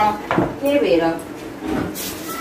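A shallow pan scraping and clattering on a concrete floor as dung is scooped into it by hand, with a sharp knock about a third of a second in. A woman's voice is heard briefly over it.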